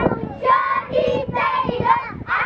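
A group of children singing together in short phrases with held notes, about four phrases in two seconds.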